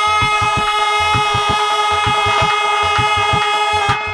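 Live folk stage music: a melody instrument holds one steady note while drums keep a fast, even beat underneath. The held note breaks off right at the end as singing returns.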